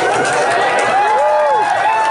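A group of people shouting and cheering in a room, with a few long drawn-out whoops that rise, hold and fall in pitch.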